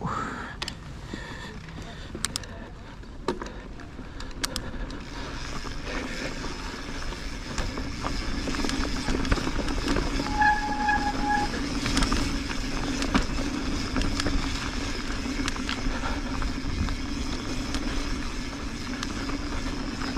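Mountain bike rolling down a dirt trail: tyre noise on dirt and wind rush that build as the bike picks up speed after the first few seconds, with scattered clicks and rattles from the bike. A short high tone sounds about ten seconds in.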